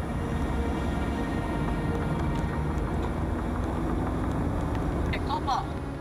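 Engine and road noise inside a moving car, picked up by a dashcam, a steady low rumble. Voices of the occupants come in briefly near the end.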